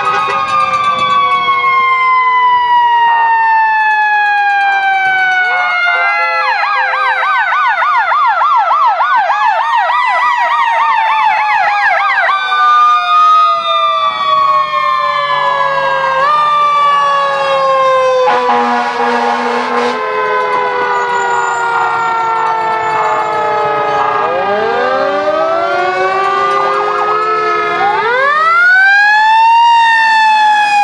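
Fire engine sirens wailing, several overlapping, each climbing in pitch and then sliding slowly down. A fast yelping warble runs from about six to twelve seconds in, and more sirens wind up near the end.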